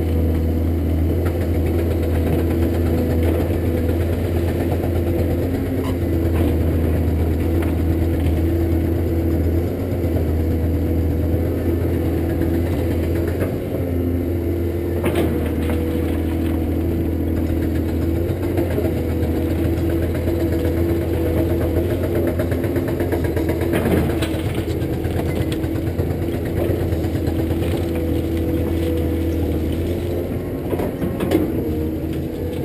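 Caterpillar 323D excavator's diesel engine running steadily under working load as the boom and bucket move, with a few sharp knocks partway through.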